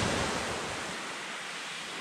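Sea surf washing on a shingle beach: an even rush of noise that eases off over the first second, then holds steady.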